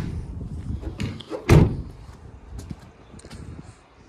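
Rear loading door of a Ford Transit Custom van slammed shut, a single loud sharp bang about a second and a half in, with a few faint clicks after it.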